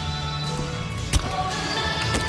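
Background music playing, with one sharp thud a little past halfway: a gymnast's hands and feet striking the wooden balance beam as she kicks into her dismount.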